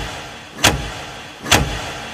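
Two dramatic sound-effect hits a little under a second apart, each swelling quickly and dying away in a long echo.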